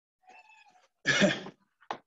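A faint, brief high-pitched sound, then a single loud cough about a second in.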